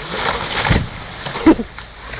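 A large felled tree coming down: a rush of branches crashing through the air and a heavy bang as it hits the ground about three-quarters of a second in.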